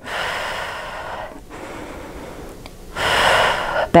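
A woman breathing audibly while exercising, one long breath in the first second or so, then a quieter stretch, then another breath about three seconds in, paced with slow lunge pulses.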